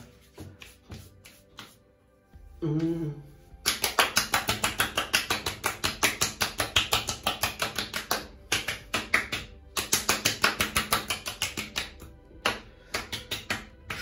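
Palms patting and slapping a freshly shaved face to work in aftershave: a quick, even run of slaps about four to five a second, with a short pause in the middle and fewer slaps near the end. A brief voiced hum comes just before the slapping starts.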